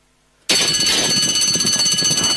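Racecourse starting-gate bell cutting in suddenly about half a second in and ringing on continuously as the stalls open and the field breaks, over a busy clatter of the start.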